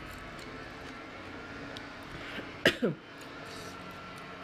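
A woman briefly clears her throat, a short sound falling in pitch in two quick pulses about two-thirds of the way in, over steady background noise.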